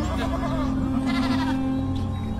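A goat bleating once, a long quavering call, over a low steady music drone.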